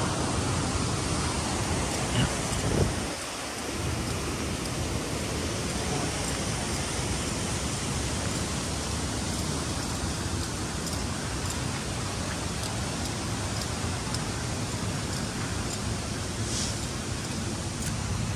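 Steady rushing of a fast-flowing mountain stream, an even hiss with no let-up. A couple of brief knocks come about two to three seconds in.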